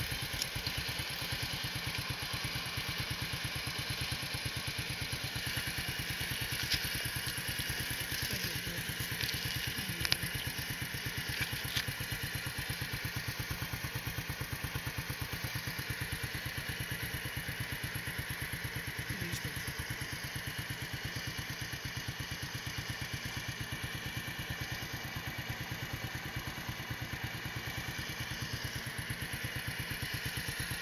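An engine idling steadily, with a few faint clicks around the middle.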